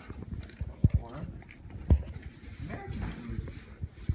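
Indistinct voices in the room, with three low thumps from the handheld camera being handled: two close together about a second in and a single one near two seconds.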